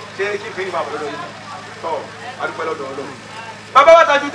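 A man speaking over a steady low hum, with a louder burst of speech near the end.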